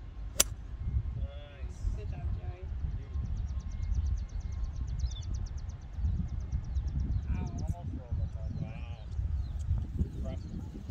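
A 5-hybrid strikes a golf ball with a single sharp click about half a second in. Afterwards a steady low wind rumble runs on the microphone, with faint voices now and then.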